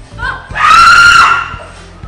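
A woman screaming in fright at a prank: a short rising yelp, then one long, high, loud scream lasting about a second.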